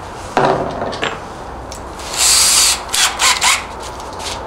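Cordless drill handled and briefly run in short bursts, with sharp clicks, as it is readied with a 4 mm bit for a pilot hole in a wooden stick.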